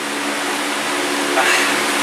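Air conditioner running with a steady hum and hiss.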